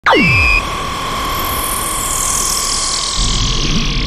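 Anime battle sound effects: a quick falling zap, then a steady electronic tone under a hiss that builds, like energy charging. A low rumble joins about three seconds in.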